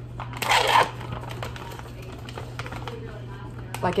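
Plastic pouch of smoked salmon crinkling as it is opened and handled. The loudest crinkle is a short burst about half a second in, followed by quieter rustling, over a steady low hum.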